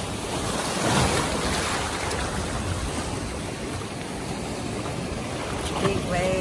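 Sea waves breaking and washing against granite shoreline boulders, a steady rushing noise that swells about a second in.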